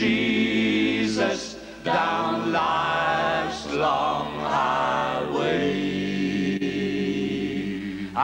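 Live country band performance: several voices singing together in long held notes, with a break in the singing about a second in and the low backing notes changing about five seconds in.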